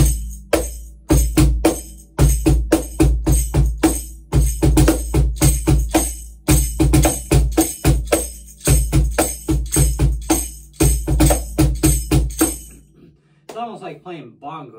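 Pearl Music Genre Primero cajon (meranti face plate, rear bass port, fixed snare wires) played by hand in a quick groove of deep bass thumps and crisp snare slaps, with a foot tambourine jingling along. The playing comes in short phrases of about two seconds with brief breaks, and stops about a second before the end.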